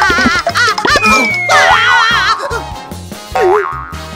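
Cartoon sound effects over light background music: warbling springy tones, a long falling whistle-like glide about a second in, and a short downward swoop near the end.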